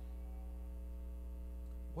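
Steady electrical mains hum from the church sound system: a low, unchanging drone with a few fainter held tones above it.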